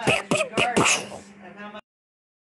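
A person's voice imitating blaster shots: about three more quick 'pew' sounds, each sliding up and back down in pitch, then a breathy hissing burst that fades and cuts off abruptly.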